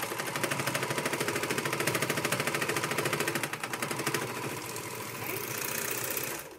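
Janome AirThread 2000D serger stitching a three-thread overcast seam at a fast, even rhythm while its knife trims the fabric edge. It eases off slightly about two-thirds of the way through.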